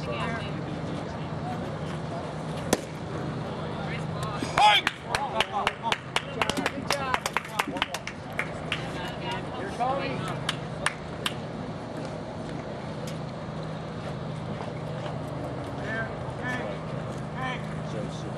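Baseball game sound during an at-bat: a single sharp pop about three seconds in, then a few seconds of rapid clapping and shouting from onlookers. A steady low hum runs underneath, and a voice calls "Nice" partway through.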